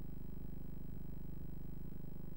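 Steady low electrical hum with nothing else on it, the sound of a blank stretch of transferred videotape.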